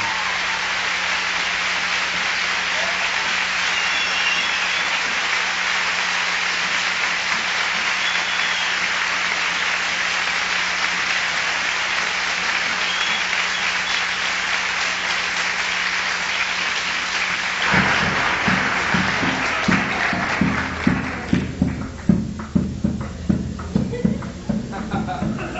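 A theatre audience applauding steadily for about eighteen seconds after a song ends. As the applause stops, music with a steady beat starts up.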